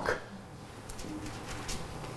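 Quiet room tone in a pause of speech, with a faint, brief low tone about a second in.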